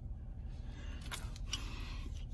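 Low, steady rumble of a car cabin, with faint brushing and handling sounds about a second in as a cocoa butter stick is rubbed on the face.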